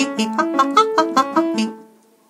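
A woman singing a fast vocal run of quick, separate notes, about six a second, as a show of vocal speed and accuracy; it fades away near the end.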